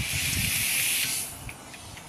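A burst of high, even hiss lasting about a second and a half, stopping a little over a second in.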